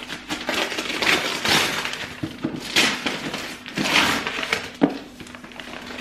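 Cardboard delivery box being torn open by hand: the cardboard rips in several loud, noisy bursts with crackling between, dying down near the end.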